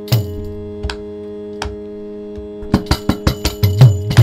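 Mridangam and khanjira strokes over a steady drone. A few isolated strokes, some with a low bass that bends in pitch, break into a fast, dense run of strokes from nearly three seconds in.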